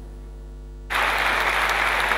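Near silence with a low hum for about a second, then a sudden cut to an audience applauding steadily.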